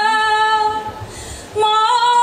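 A woman singing a Csángó folk song unaccompanied: one long held note that fades out a little under a second in, a brief pause for breath, then the next phrase starting near the end with a slight upward slide.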